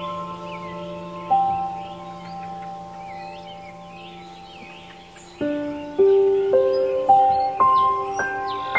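Background music of slow, ringing chime-like mallet notes that hang on and overlap. A new note sounds about a second in, and a quicker run of notes starts past the middle. Birds chirp faintly throughout.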